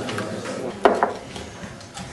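Ping pong balls being handled and set down on a plastic tray, with two sharp clicks close together a little under a second in.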